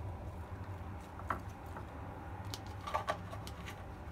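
Faint, irregular light clicks and taps from pomelo flesh being scattered by hand into a glass lunch box, a few of them about a second in and around three seconds in, over a low steady hum.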